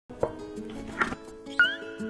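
Variety-show background music of steady held tones, punctuated by three short sound effects, the last a quick upward slide about one and a half seconds in.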